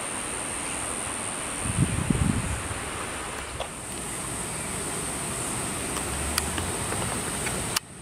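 Steady outdoor background: a broad hiss with a constant high-pitched whine over it, and a brief low rumble about two seconds in. It cuts off suddenly just before the end.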